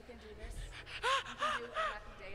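A woman laughing: three short, high-pitched gasping bursts about a third of a second apart, each rising and falling in pitch.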